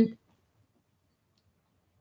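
A woman's voice ends a word at the very start, then a pause of near silence until she speaks again.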